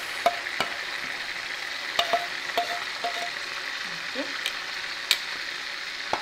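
Fish frying in hot oil in a metal pan: a steady sizzle, with a few sharp clicks spread through it.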